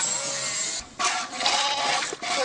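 A sheep's fleece being sheared: rasping, scraping strokes through the wool in two stretches, with a short break about a second in.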